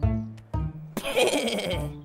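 Cartoon background music with short, low plucked notes. About a second in, a sudden bleat-like vocal from the animated sheep Shaun breaks in and falls in pitch for about a second.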